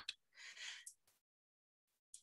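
Near silence with a faint breath, a soft intake of air lasting about half a second, then dead silence.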